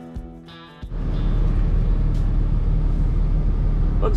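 Guitar music for about the first second, then a sudden switch to the steady low rumble of a semi-truck's engine and road noise heard from inside the cab.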